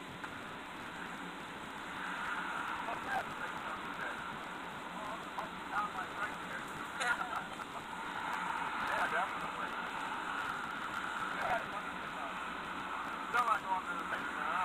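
Faint, indistinct voices over a steady hiss, muffled as if a video's soundtrack were playing through a computer speaker and picked up by a phone.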